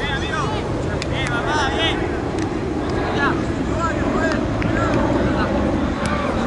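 Players' voices calling and shouting across a football pitch, too distant to make out words, over a steady low rumble. A few sharp knocks are heard.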